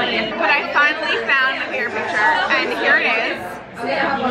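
Speech: people talking, with other voices chattering behind, and a brief lull near the end.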